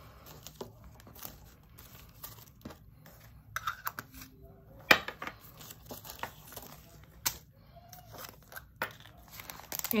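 Small resealable plastic bags crinkling and rustling as they are handled, with scattered light clicks and taps; the sharpest click comes about five seconds in.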